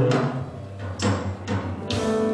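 Live worship-band music starting up: a few sharp percussive hits over a low held note.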